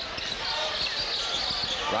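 Gym sound during live basketball play: a mix of crowd noise and short knocks from the ball and players' feet on the hardwood court.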